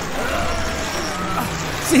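Cartoon sound effects of a monster truck's engine rumbling under load as its mud-caked wheels churn through mud. Short wordless straining voices rise over it a couple of times.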